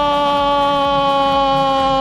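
Football commentator's long, loud held shout of "gol", one sustained note sinking slowly in pitch.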